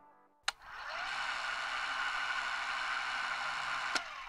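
A film projector sound effect: a click about half a second in, then a steady mechanical whir that runs until a second click near the end.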